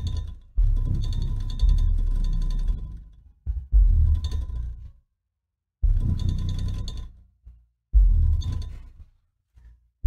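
Music with very heavy, deep bass played loud through a Dayton Audio 21-inch Vortex subwoofer driven by a QSC RMX 2450a amplifier in bridge mode at about 2400 watts. The bass comes in strong hits and blocks that cut off abruptly, with two short silent breaks, about five seconds in and near the end.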